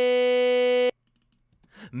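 A single sung vocal note, pitch-corrected in Melodyne, held dead steady with a buzzy, robotic tone and cutting off suddenly about a second in.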